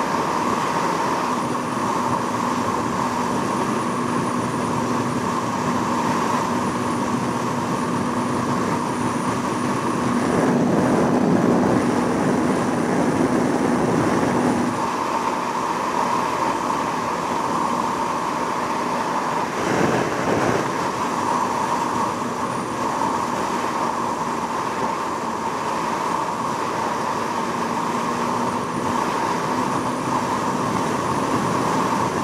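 Yamaha YZF600R Thundercat's inline-four engine holding a steady highway cruise under a constant rush of wind. About ten seconds in, a louder low rush swells for a few seconds, and there is a brief swell again near twenty seconds.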